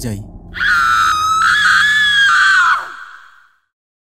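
A single long, very high-pitched scream, starting about half a second in and lasting a little over two seconds, over a low droning horror music bed; both fade away to silence near the end.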